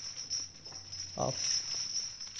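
A man's voice saying a single short word about a second in, over a steady high hiss.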